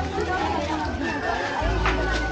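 Crowd chatter, several voices at once, over music with a heavy bass line that grows louder near the end.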